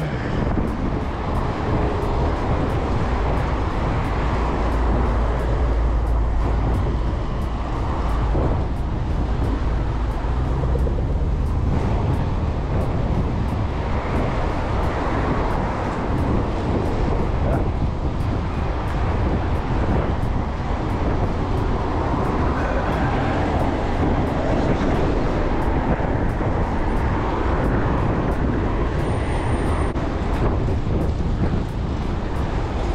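Steady city traffic noise with low wind rumble on the microphone, heard from a moving bicycle.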